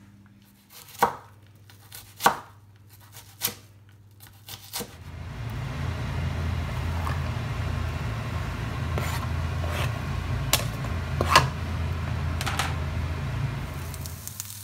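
A knife knocks on a chopping board four times, about a second apart. About five seconds in, chopped onion starts frying in a non-stick pan: a steady sizzle over a low hum, with a few clicks as the plastic board and a wooden spoon touch the pan.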